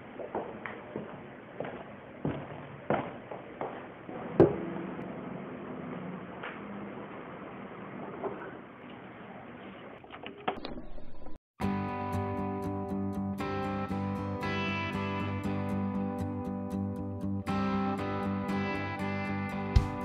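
For about ten seconds there is muffled room noise with scattered knocks and thumps, the loudest about four seconds in. A reel-to-reel tape recorder is then switched on, and a country song's instrumental intro starts about eleven seconds in, with sustained chords over a steady beat.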